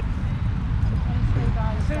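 Wind buffeting the microphone as a steady low rumble, with a voice speaking briefly near the end.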